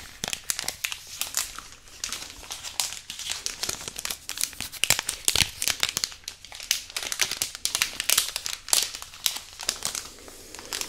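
A small white packet crinkled and crumpled in the hands close to the microphones: a dense, irregular run of sharp crackles with a few louder snaps.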